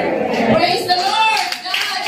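Congregation clapping hands, the claps starting to come through near the end, under a woman's voice amplified over the church PA.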